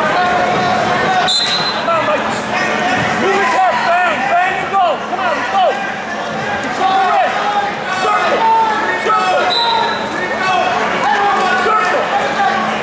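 Coaches and spectators shouting over one another in a gym during a wrestling bout, with long rising and falling yells. A short, high referee's whistle sounds about a second in, and another comes near the end.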